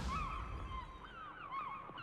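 Seagull cries in a logo sound effect: a quick series of short calls, each falling in pitch.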